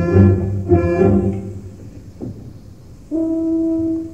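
Opera orchestra playing: loud accented chords with heavy low notes for the first second and a half, then quieter, and a single steady held note entering about three seconds in.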